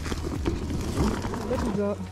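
Rustling and scraping of a foil-lined insulated delivery bag as a pizza box is pulled out of it, with a steady low hum underneath. A voice starts near the end.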